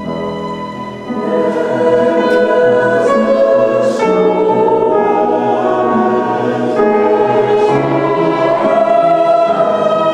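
Choir singing with two violins and keyboard accompaniment. The voices enter about a second in, lifting the volume, with a few sharp sung 's' consonants.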